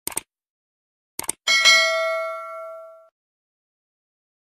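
Subscribe-button animation sound effect: two quick clicks, two more clicks about a second later, then a single bell ding that rings out and fades over about a second and a half.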